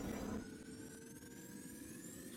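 Faint fading tail of a logo-intro sound effect after a boom: a dying rumble with a few quiet held tones, the highest of them slowly rising in pitch.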